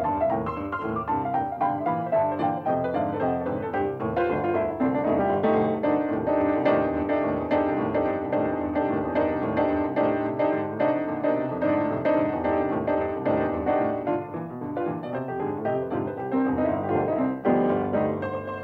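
Solo blues piano playing, with a fast repeated-note tremolo held through the middle of the passage.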